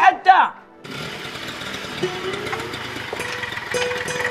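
Small moped engine running, its note rising in pitch about two seconds in and then holding steady.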